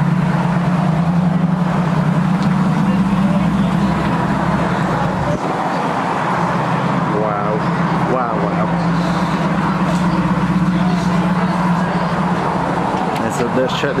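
TVR Griffith's Rover V8 running at low speed with a steady low burble as the car creeps across the forecourt into a parking spot.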